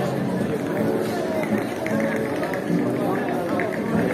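Live street music, with guitar and voices, playing amid the chatter of a gathered crowd. About a second and a half in, a steady run of short, quick clicks in time with the music begins.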